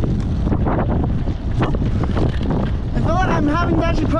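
Strong wind buffeting the camera microphone, a loud, steady, rumbling roar. A voice starts speaking near the end.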